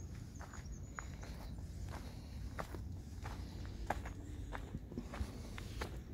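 Footsteps crunching on a gravel driveway, irregular short crunches, over a steady low rumble.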